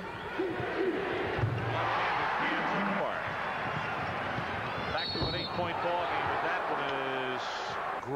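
Arena crowd noise during live basketball play, with a basketball bouncing on the hardwood court. The crowd swells about a second and a half in and stays up.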